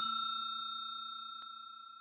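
A bell-chime sound effect ringing out and fading away evenly, with a faint tick about one and a half seconds in.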